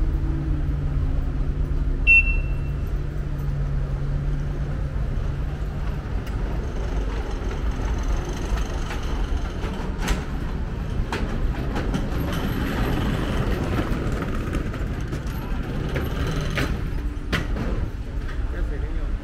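Busy town-street traffic noise. For the first several seconds a nearby vehicle engine idles with a steady low hum, with a single short high beep about two seconds in. After that there is a general wash of passing traffic with a few sharp clicks.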